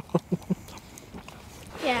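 A person laughing in four short, quick bursts, then a low background until a spoken 'yeah' near the end.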